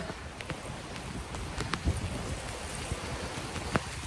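Steady rain falling, with a few sharp ticks scattered through it.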